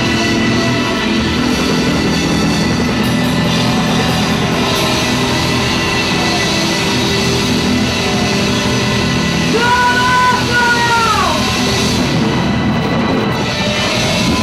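Live rock band playing: electric guitar over a drum kit, with a held guitar note about ten seconds in that bends down in pitch.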